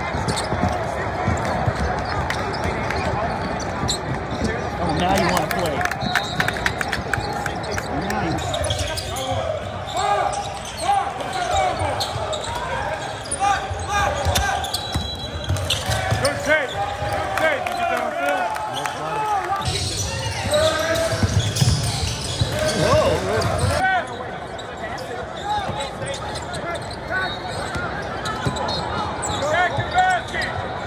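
Basketball game sound in a large gym: a ball dribbled on a hardwood court among players' and spectators' voices, with sharp strikes throughout. The sound changes abruptly several times as the footage cuts between games.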